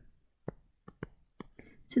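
A few faint, sharp clicks, about three, of a stylus tapping on a tablet screen while writing, with near silence between them; a spoken word begins right at the end.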